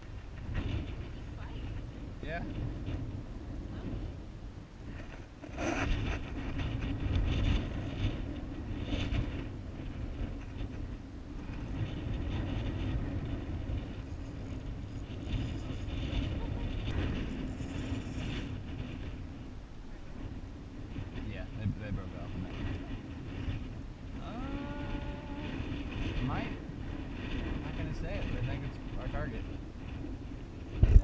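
Wind buffeting an action camera's microphone: a steady low rumble that swells and eases with the gusts.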